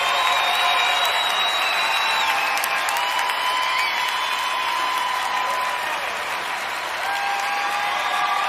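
Live concert audience applauding after the song ends, steady clapping throughout.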